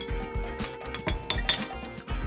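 A metal spoon clinking several times against a small ceramic dish while scraping dissolved saffron into the pan, over soft background music.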